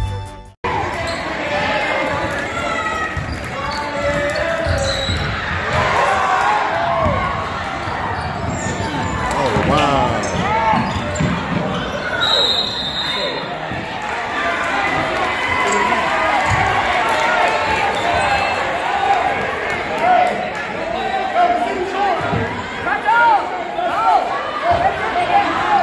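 Basketball game in a gym: the ball bouncing on the hardwood, many short squeaks of sneakers on the floor, and a crowd's voices echoing in the large hall, starting abruptly just under a second in.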